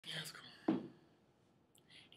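Faint whispering, then a short bump about two-thirds of a second in as a person settles back in a chair close to a webcam microphone.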